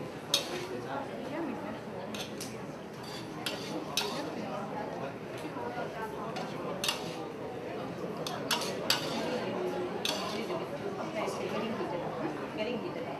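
Metal spatula scraping and clanking against a large aluminium wok while stir-frying noodles, with irregular sharp clinks of metal on metal.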